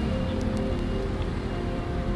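Background music with held notes over a low, steady rumble.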